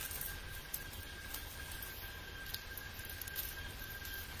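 Quiet room with a steady low hum and a faint steady whine, and a few faint soft ticks from the pages of a Bible being turned.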